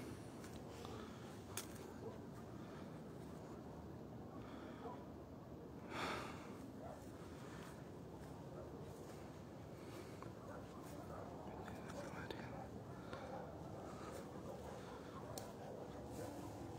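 Faint whispering and breathing close to a phone's microphone, with a few soft clicks and one short louder breathy burst about six seconds in.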